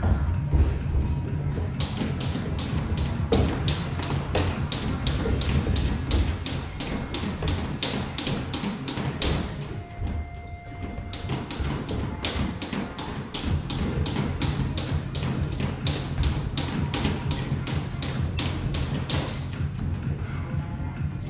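Boxing sparring: padded gloves thudding and tapping against gloves, headgear and body, with footwork on the ring canvas, over background music with a steady bass line. The taps and thuds come several a second, with a short lull about halfway through.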